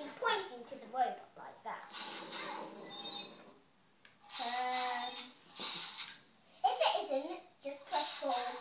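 A young girl's voice, talking and vocalising in snatches without clear words, with short pauses between.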